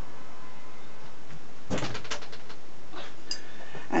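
A short cluster of knocks and clatters about two seconds in, with a couple of fainter knocks near the end, over a steady low hiss.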